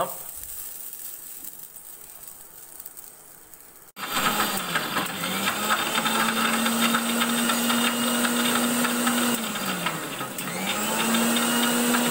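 An Indian electric mixer grinder starting about four seconds in and grinding roasted flattened rice; its motor whine rises, holds steady, sags briefly near the end and climbs back up. The first few seconds are faint before it starts.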